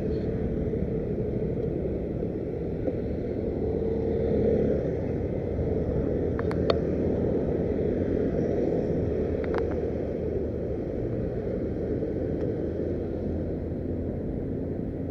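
Steady low rumble of a motorbike and passing street traffic, with a couple of faint clicks midway.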